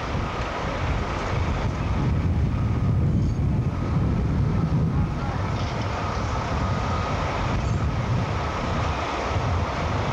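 Steady rumble of heavy construction machinery, with wind buffeting the microphone.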